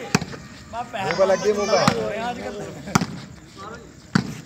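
A volleyball struck by hand in a shootball rally: three sharp slaps, one just after the start and two more about a second apart later on, with players shouting in between.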